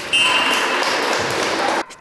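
Volleyball referee's whistle blown in one long blast with a rushing, noisy edge, cut off sharply near the end.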